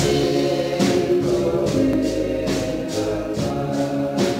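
Religious song: voices singing over instrumental backing, with a steady percussion beat of about two strokes a second.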